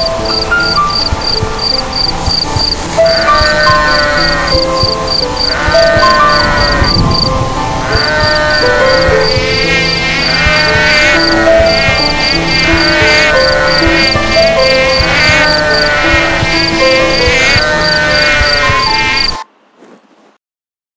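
A mix of relaxation-app sounds: calm music with a slow melody, a high insect chirping in a steady pulse about four times a second, and, from about three seconds in, repeated falling chirping calls roughly once a second. Everything cuts off suddenly near the end.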